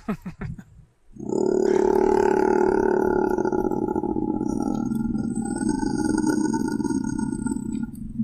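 A man's long, powerful growl in a demonic voice, held steady for about seven seconds and cutting off near the end, after a short laugh in the first second. Recorded straight into a computer rather than a microphone.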